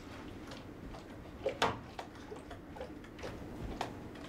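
A dozen or so faint, irregularly spaced clicks and ticks over a low room hum. The loudest pair comes about one and a half seconds in.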